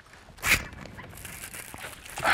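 A sudden short splash about half a second in, the loudest sound, as a small largemouth bass hits or is hooked at the surface, followed by fainter splashing as the fish thrashes on the line.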